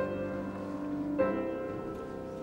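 Piano playing slow, sustained chords: one chord struck at the start and another about a second in, each left to ring and fade.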